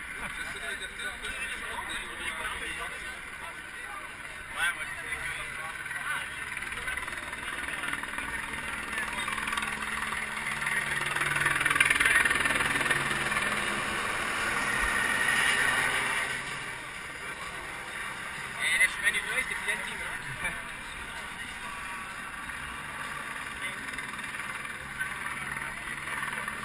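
Hubbub of a large crowd of cyclists talking at once, swelling louder for a few seconds around the middle, with a few short clicks a little later.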